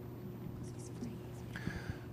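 A pause in a talk: quiet room tone with a steady low hum, and faint whispered voice sounds about half a second in and again near the end.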